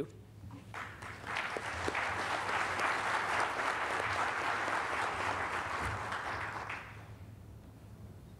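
Audience applauding, building up about a second in and dying away near the end.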